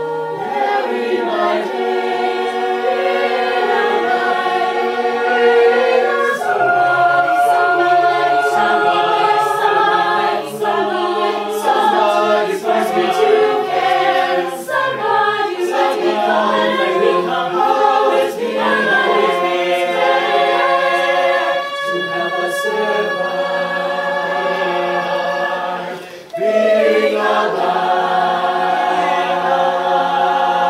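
Co-ed a cappella group singing in close harmony, several men's and women's voice parts at once with no instruments. The voices drop away briefly near the end, then come back in full.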